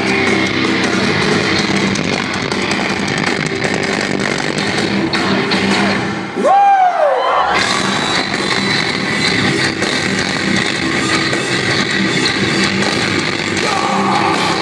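Metalcore band playing live, with loud distorted guitars and drums. About halfway through the low end drops out for a moment while a single note bends down, then the full band comes back in.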